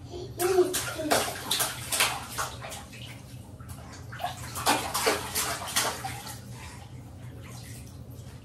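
Water splashing and sloshing in a baby bathtub as a baby is bathed: a run of irregular splashes through the first six seconds, thinning out near the end.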